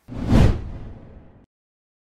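Whoosh transition sound effect, swelling to a peak about half a second in and fading out over the next second.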